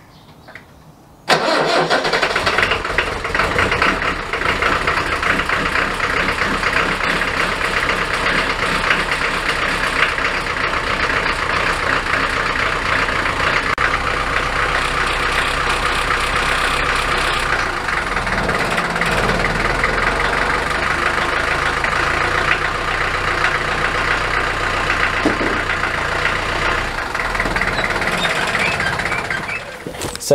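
Land Rover Series III four-cylinder diesel engine firing up about a second in, then running steadily at idle.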